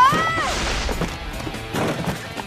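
Cartoon attack sound effects over background music: a short rising pitched zap at the very start, then a crash with a rush of noise that fades over about a second, as a magic blast hits.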